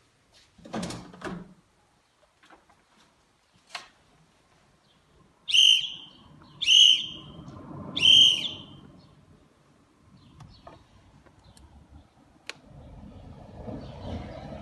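Three short, loud whistle-like calls about a second apart, each bending down at its end, after a couple of soft knocks, with a few scattered clicks.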